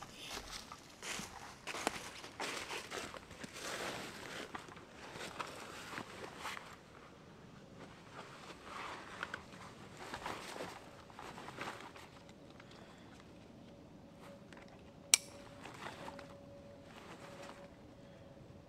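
Dry leaves rustling and crunching underfoot while a backpack is lifted and swung on, with pack fabric and straps shuffling; the handling is busiest in the first seven seconds, then quieter. About fifteen seconds in comes one sharp click of a pack buckle snapping shut, the loudest sound.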